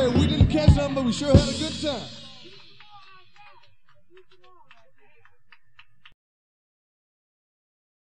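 Live blues-rock band ending a song on a held chord, with voices shouting over it. The music fades out about two seconds in to faint scattered claps and voices, and the sound cuts off abruptly about six seconds in.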